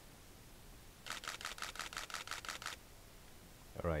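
Digital camera shutter firing a rapid burst of shots: about ten crisp clicks in under two seconds, roughly six a second, starting about a second in.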